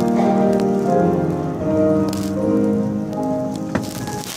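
A college choir singing a slow chorale in held chords, with a faint crackling hiss over the recording and a single click near the end.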